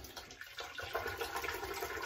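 Bathroom tap running, water splashing into the sink, starting about half a second in.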